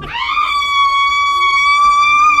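A person's voice: one long, high-pitched cry held on a steady note, sliding up into it at the start.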